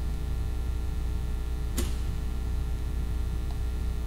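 Steady low electrical hum, like mains hum in the audio feed, with a single sharp click a little before the middle.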